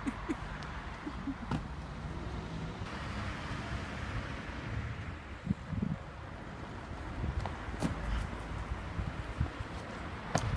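Steady outdoor street noise on a phone microphone, with a few short knocks and thumps from feet stepping and landing on railings and stone.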